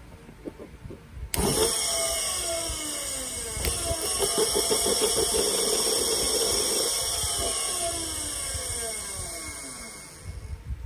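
Large German-made DC motor switched on to run in reverse: it starts suddenly about a second in, then runs with a whine whose pitch falls steadily as it slows, dying away near the end.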